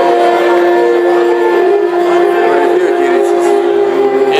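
Live Epirotic Greek folk music: a clarinet holds one long, steady note for about two and a half seconds, then moves down through a few lower notes over the band's accompaniment.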